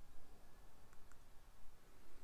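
Quiet room tone with two faint, short clicks about a second in, a fifth of a second apart.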